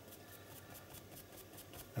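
Faint, soft scuffing of a craft sponge being rubbed over acrylic paint on a paper journal page, against quiet room tone.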